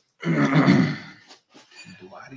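A man clearing his throat: one harsh, rasping sound lasting about a second, then fading.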